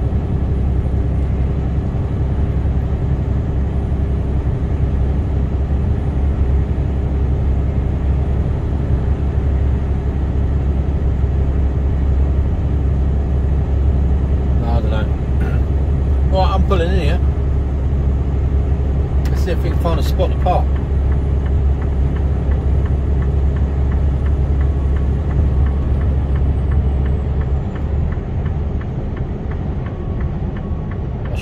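Steady low drone of a Mercedes-Benz Actros lorry's diesel engine and tyre noise, heard inside the cab while cruising at motorway speed. A voice is heard briefly twice around the middle.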